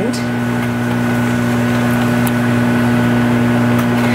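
Microwave oven running: a steady electrical hum with an even whir, while halved purple sweet potatoes cook inside, making what is called "the craziest sound".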